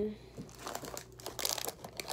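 Plastic snack wrapper crinkling as it is handled, in a few irregular rustling bursts, the strongest about one and a half seconds in.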